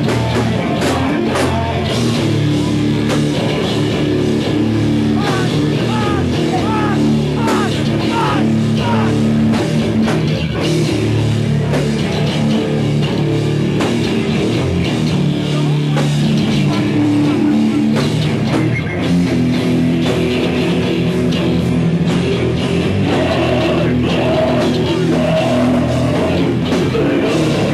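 A live heavy rock band playing loud distorted electric guitars and a drum kit, heard through a camcorder in the crowd, with short sliding high notes between about 5 and 10 seconds in.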